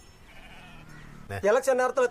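A quiet first second, then about one and a half seconds in a loud, wavering, quavering bleat from a goat or sheep on the film's soundtrack.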